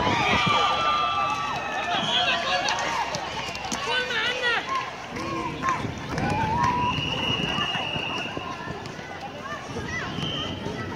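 Several men shouting and calling out over one another during an outdoor football match, with one long high steady tone about seven seconds in.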